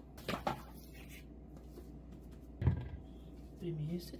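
Handling knocks as risen yeast dough is turned out of a plastic mixing bowl onto a silicone baking mat: a few light knocks just after the start, then one dull thump, the loudest sound, about two-thirds of the way in.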